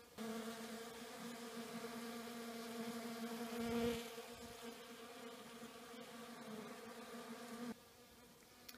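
Honeybees buzzing in flight as they hover to gather pollen substitute, a steady hum that swells about halfway through as one flies close, then cuts off just before the end.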